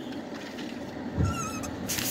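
Steady low rumble inside a parked car, with a soft thump a little past halfway and a brief wavering squeak just after it as the phone and bottle are handled.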